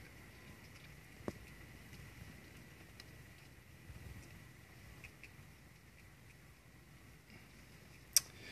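Near silence: faint patter of rain, with a few light ticks and one sharp click just over a second in.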